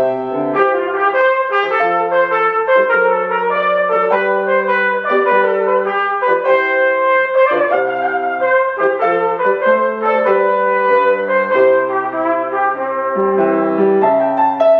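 Trumpet playing a classical sonata melody in a run of distinct notes, over grand piano accompaniment.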